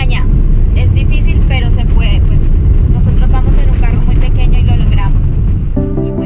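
A car's engine and tyre noise heard inside the cabin while driving on an unpaved track: a loud, steady low rumble, with voices over it. Music comes in near the end.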